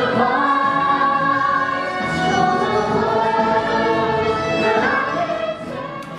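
A stage cast of young performers singing together in chorus over accompanying music, the sound dipping in level near the end.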